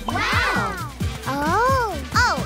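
Playful cartoon background music, with a character's voice making two drawn-out calls that rise and then fall in pitch, the second one shorter.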